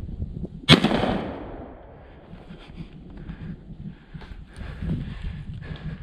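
A single shotgun shot fired at a wild boar, a sharp loud blast about a second in, followed by an echo that fades over about a second.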